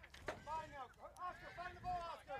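Faint voices talking, with a brief sharp knock about a third of a second in.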